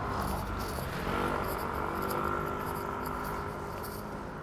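A steady mechanical hum with several held tones, growing stronger about a second in, over a low rumble of street noise.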